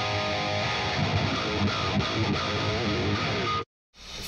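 Electric guitar played through the Fortin Nameless Suite amp-simulator plugin with its Grind boost pedal engaged, giving a punchy, driven tone. The playing cuts off abruptly near the end.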